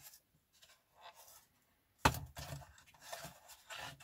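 A sharp plastic click about halfway through, followed by light scraping and clicking as a hollow plastic RC truck cab is handled and picked at by hand. The first half is nearly silent.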